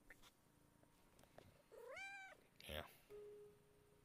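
A cat meows once, a single call that rises, holds and falls in pitch, about two seconds in. A brief rustle follows, and a faint keyboard note sounds near the end.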